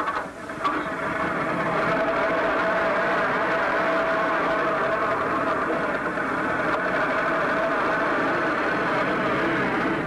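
An old 1920s-style truck's engine catching after a few clicks at the front, then running steadily with a constant tone as the truck pulls away.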